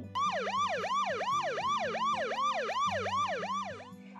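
Police car siren in quick yelping sweeps, nearly three a second, each rising and falling in pitch, for about three and a half seconds.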